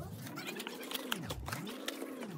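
Cardboard takeout box being handled and opened with gloved hands: a series of light clicks and scrapes, over a low tone that rises and falls about once a second.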